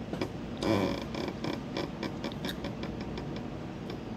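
Close-up eating sounds: a short scrape about a second in, then a run of small mouth clicks and smacks while chewing, about four a second.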